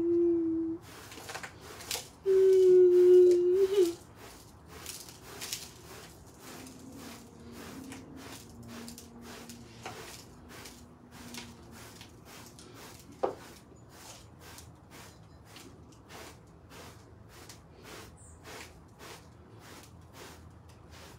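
A woman hums two long held notes in the first four seconds. Then a hand brush sweeps debris into a plastic dustpan in short strokes, about two a second, with a fainter low hum partway through and a single sharp click about thirteen seconds in.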